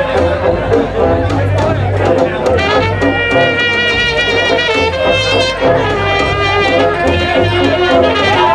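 Balkan brass band playing live: trumpets carry a sustained melody over sousaphone bass and drums, with a steady beat.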